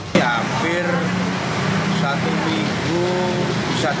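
Voices talking over a steady low hum of an idling car engine, cutting in abruptly at the start.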